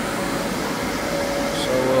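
Steady rushing noise of air-handling fans in a large shop building, with a faint steady hum under it.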